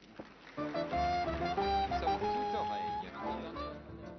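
Live dance band striking up a song's introduction about half a second in: sustained chords over a steady bass line, with a sliding note near the end.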